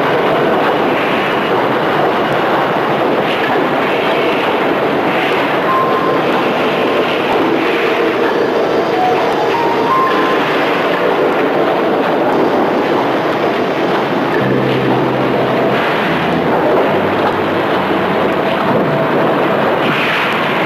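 Loud, steady industrial roar of a steel-mill furnace floor, a dense unbroken din with a few faint brief tones in it.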